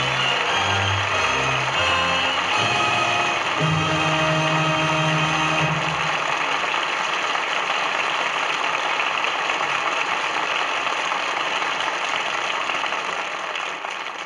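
Studio orchestra playing the closing bars of the drama's music, ending on a long held chord about six seconds in, over a steady wash of studio-audience applause. The applause carries on alone after the music stops and fades near the end.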